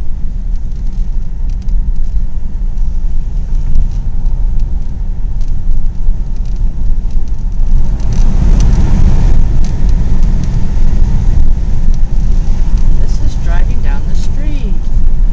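A car driving, heard from inside the cabin: a loud, steady low rumble of road noise that swells about eight seconds in.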